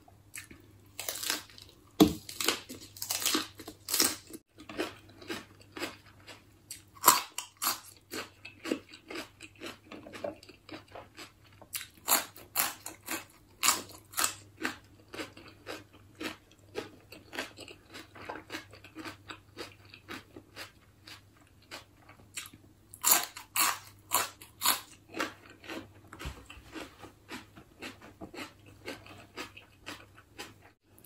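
Close-miked chewing and crunching of a fresh lettuce leaf wrapped around spicy snail salad. Louder bursts of crisp crunches come a few times, with softer chewing between.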